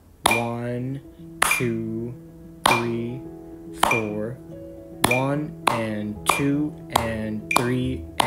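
Metronome clicking at 50 beats per minute, about one click every 1.2 s, with a hand clap on each click and a voice counting the beats. About five seconds in, the claps double to two per click as the rhythm moves from quarter notes to eighth notes.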